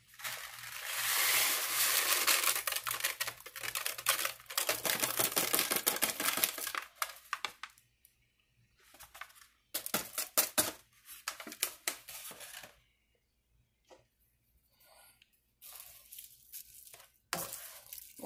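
Water and a packet of dry rice mix going into a skillet of cooked sausage and vegetables. A long, crackly rush of pouring and sizzling fills the first several seconds. Shorter bursts of rustling follow as the mix is shaken out of its paper bag into the pan.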